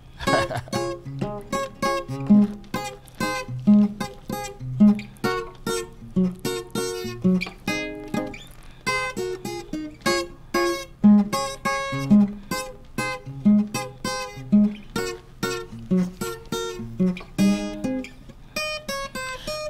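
Solo acoustic guitar played by hand: a highlife tune of quick plucked melody notes over a low bass note that comes back about once a second.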